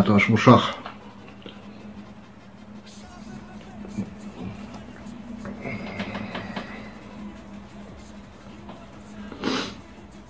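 A man breathing hard and blowing out through pursed lips from the burn of a habanero pepper he has just eaten, with a loud blow about nine and a half seconds in. A low steady hum runs underneath.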